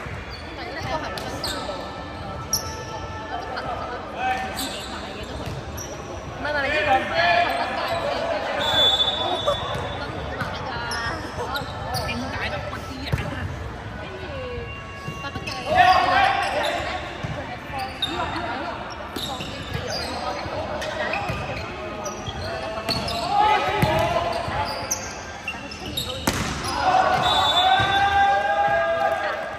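Men's volleyball rally in a large sports hall: players shouting and calling to each other, with sharp knocks of the ball being struck and landing on the court. The hall echoes.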